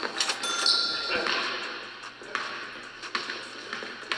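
Indoor basketball game: a short squeak about half a second in and a few separate knocks of the ball on the hardwood court, under faint voices.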